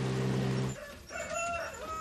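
A boat's motor runs with a steady drone and cuts off under a second in. Then a rooster crows, one long call that carries on past the end.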